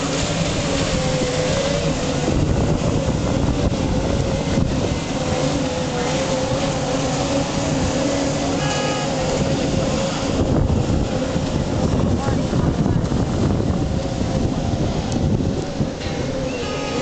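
Thundercat racing inflatables' two-stroke outboard engines running hard, a loud steady drone whose pitch wavers up and down, with wind on the microphone.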